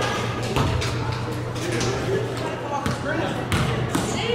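Basketballs bouncing on a gym floor at irregular intervals, over background chatter of voices and a steady low hum.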